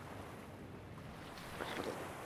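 Steady rushing noise with no clear tone, a little louder near the end.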